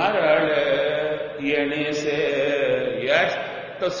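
A man's voice chanting a line of devotional verse in long, held melodic notes that glide slowly up and down.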